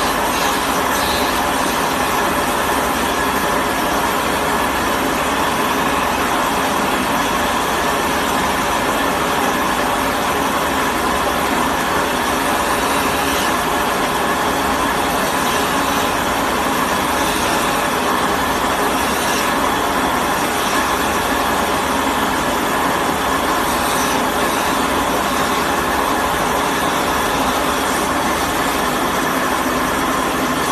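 Electric wood lathe running steadily while a cricket bat's handle spins in it and is turned.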